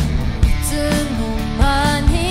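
Live band playing a pop-rock song with drums and guitar. A held melody line comes in about half a second in, stepping between long notes and wavering near the end.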